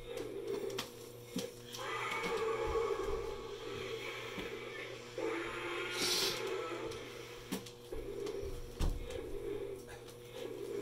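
Battery-powered walking toy T-Rex running: a steady motor hum with growling and roaring sound effects from its speaker, the loudest stretch between about two and five seconds in, and a short hiss about six seconds in.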